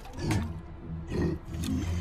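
Deep, angry growls from the Hulk character in short bursts: one about a quarter second in, another about a second in and a third near the end.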